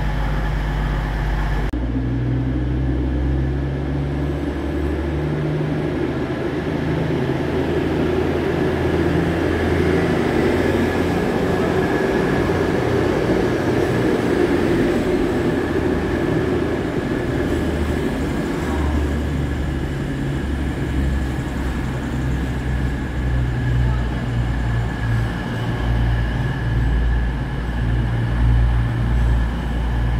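Diesel train running, a steady engine drone over an uneven low throb, growing louder through the middle and easing off again, with a faint steady high whine.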